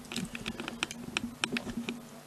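Handling noise from the camera being moved and repositioned: irregular light clicks and taps, several a second, over a steady low hum.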